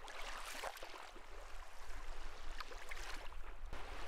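Water lapping and splashing against a moving boat's hull in small irregular splashes, over a low steady rumble.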